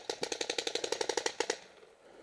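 Planet Eclipse Ego09 electronic paintball marker, on high-pressure air, firing a rapid even string of shots at about twelve a second. The string stops about a second and a half in.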